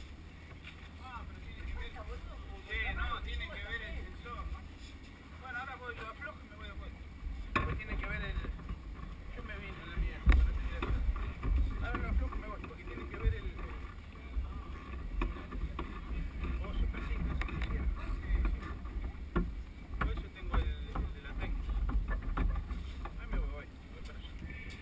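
Wind buffeting the camera's microphone: a low rumble that rises and falls in gusts, strongest about ten seconds in, with faint voices of people talking nearby.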